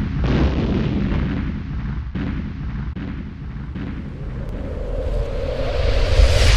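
Cinematic logo-intro sound effect: a deep, explosion-like crashing rumble, renewed by fresh hits about every second, that swells into a rising, brighter whoosh near the end.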